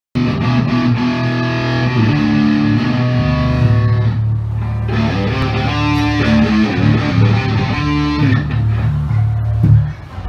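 Rock band playing: distorted electric guitar over held bass-guitar notes, cutting off suddenly right at the end.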